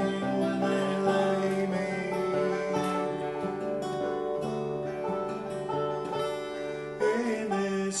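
Acoustic guitar and five-string banjo playing together in a folk song's instrumental passage, the guitar strummed under the banjo's picking, with a harder strum near the end.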